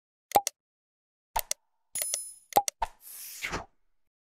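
Animation sound effects: quick mouse-click pops, mostly in pairs, a short bright bell ding about two seconds in, and a whoosh near the end.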